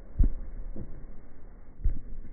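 Bare fist punching a rubber training dummy's head: two low thuds, one just after the start and one near the end, with a fainter knock between.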